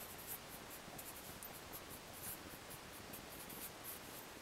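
Felt-tip marker writing on paper: a run of short, faint strokes.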